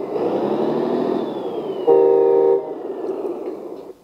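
LESU RC truck sound board playing a simulated truck engine through its small speaker, with a high whistle falling slowly in pitch. A horn blast of under a second sounds about two seconds in, and the engine sound dies away near the end.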